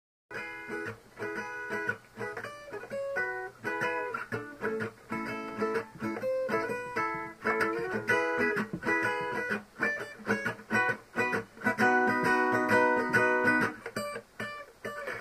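Acoustic guitar picked in a quick, even pattern of single notes, with fuller chords ringing out near the end.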